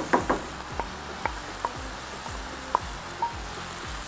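Minced meat with frozen peas and diced carrots sizzling in a frying pan as they are sautéed, stirred with a wooden spoon that clicks against the pan now and then.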